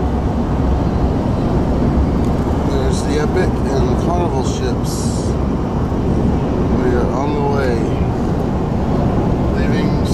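Steady road and engine noise heard from inside a taxi cabin at highway speed. Indistinct voices come in about three seconds in and again around seven seconds.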